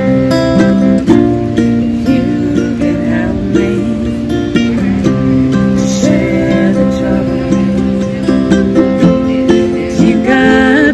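Acoustic guitar and ukulele playing together, a plucked and strummed instrumental passage of a folk song between sung verses.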